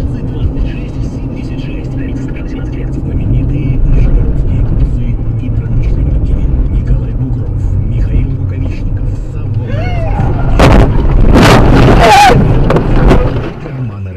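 Steady low rumble of a car driving, heard from inside the cabin. About ten seconds in comes a burst of loud, sharp impacts, a car collision, with a voice crying out.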